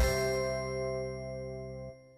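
Closing chord of a TV programme's title jingle: a final struck, bell-like chord that rings on and slowly dies away, fading out near the end.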